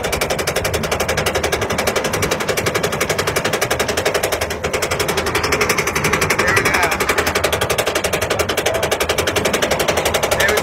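Roller coaster climbing its lift hill: a rapid, even clatter of the chain lift and anti-rollback ratchet.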